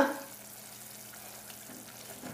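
Pot of chopped collard stems boiling in water over high heat: a faint, steady bubbling and sizzling.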